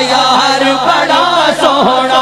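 Male voice singing a Sufi devotional manqabat with a wavering, ornamented melody, over a steady low hum.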